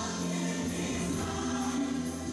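Gospel-style choir singing with music, the voices holding long notes.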